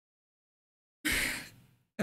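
A woman's single breathy sigh, starting about a second in after complete silence and fading away.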